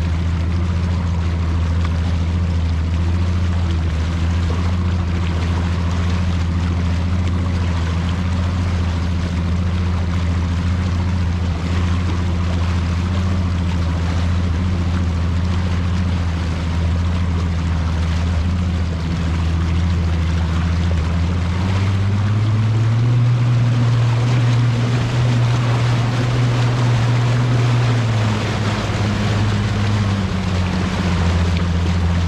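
Bass boat's outboard motor running at speed, a steady engine note over a rush of wind and water. About two-thirds of the way through the engine's pitch rises and holds for several seconds, then drops back near the end.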